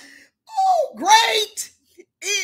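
A woman's voice in a loud, drawn-out wordless wail: one cry sliding down in pitch, then another sweeping up high.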